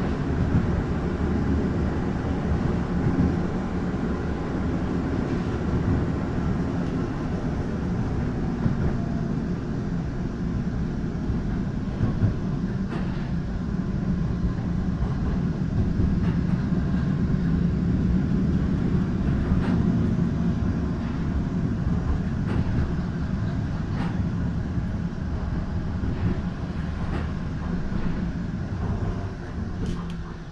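Düwag GT8S articulated tram in motion, heard from inside the passenger car: a steady low rumble of wheels on rails and running gear, with occasional faint clicks. It gets quieter near the end as the tram slows into a stop.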